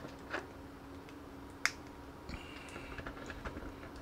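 Small plastic action-figure parts clicking together as the head piece is fitted onto the figure. There is one sharp snap a little before halfway, with softer clicks and handling ticks around it.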